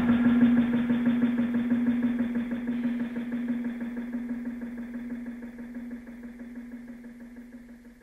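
An idling engine's steady, evenly pulsing hum, fading out slowly.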